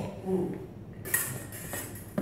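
Steel sabre blades clinking and scraping against each other in fencing practice, with a sharp metallic strike about a second in.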